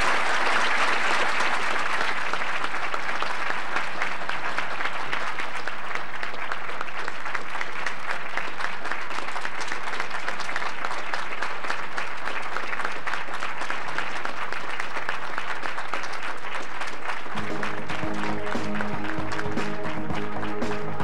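A large audience applauding in a long, steady round of clapping, strongest in the first couple of seconds. Near the end, music with steady sustained notes comes in under the applause.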